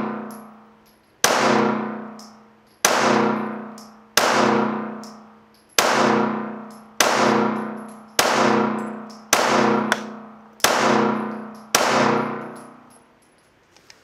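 Slow, deliberate pistol shots from a Springfield Armory Echelon: nine shots, about one every second and a half, each a sharp crack followed by about a second of ringing decay that fades out before the next.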